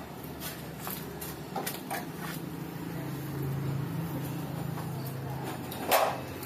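A steady low engine hum with scattered light knocks and clanks, the loudest just at the end.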